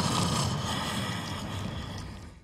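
A single long, loud breath from the masked killer, taken from a film's soundtrack: a breathy rush that slowly fades away.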